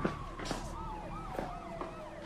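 Police sirens wailing in the distance: one steady tone slowly falling in pitch while another sweeps up and down about three times a second.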